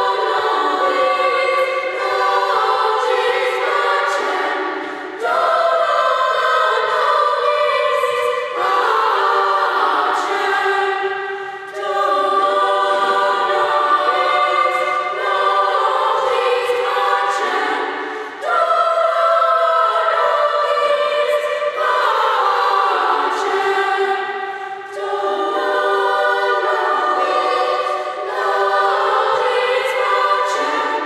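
Middle-school chorus of young voices singing together in long, held phrases, with brief dips for breath every few seconds.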